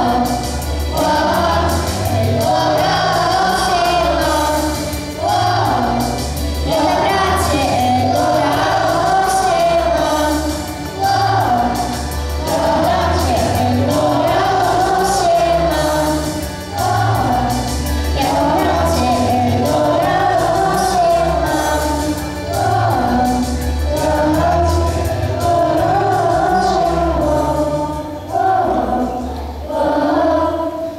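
A children's vocal group singing together into microphones over a backing track with a steady beat and pulsing bass.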